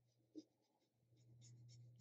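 Near silence: faint soft strokes of a watercolour brush on paper over a faint low hum.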